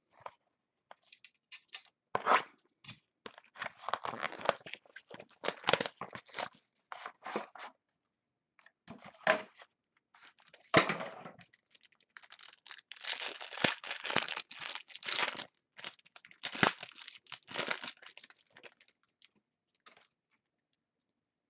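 A sealed trading card box being torn and opened by hand: irregular bursts of tearing and crinkling packaging, with short pauses between and a busier stretch past the middle.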